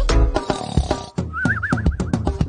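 Children's-song backing music, with the singing paused. About a second and a half in, a short wavering high horse-whinny sound effect plays over it.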